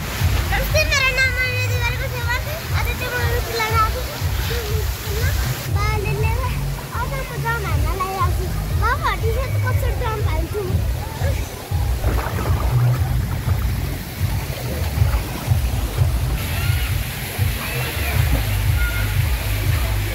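Water sloshing and splashing, with voices calling out and background music with a steady bass under it.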